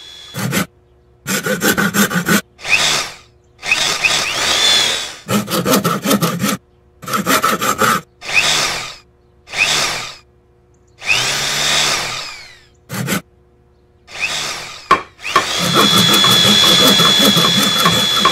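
Carpentry work on wooden furniture: a stop-start series of drilling and sawing bursts, each about a second long with short silences between. In the last few seconds the noise runs continuously with a steady high whine.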